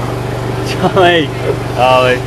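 People's voices in short exclamations, about a second in and again near the end, over a steady low hum.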